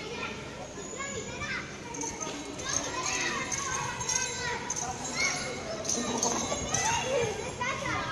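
Children's voices: several kids talking and calling out.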